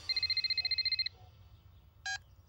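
Telephone ringing: one rapid, trilling electronic ring about a second long, then it stops.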